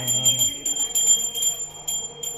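A puja hand bell rung rapidly for worship at a home altar: a sustained high ringing made up of quick repeated strokes, about six or seven a second.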